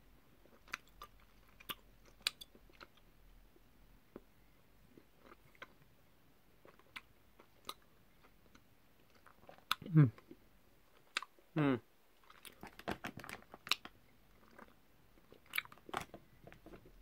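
Tangy sugar-coated wine gum being chewed in the mouth: faint, scattered sticky clicks, with a hummed 'hmm' about ten seconds in and again near twelve.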